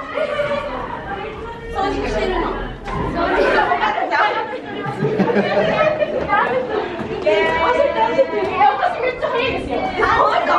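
Lively chatter of several schoolgirls talking over one another.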